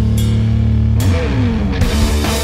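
Instrumental stoner doom rock: heavily distorted guitar and bass hold a low chord under cymbal crashes. About a second in the pitches bend. A new loud hit with drums and cymbals comes near the end.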